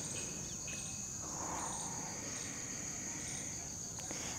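Steady, high-pitched drone of an insect chorus, fairly quiet.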